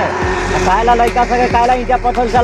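A man's voice, with a steady low hum underneath.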